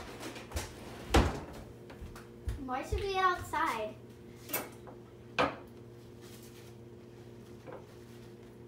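A few sharp knocks and clatters of kitchen things being handled on a table and counter, with a short child's vocal sound a few seconds in, over a steady low hum.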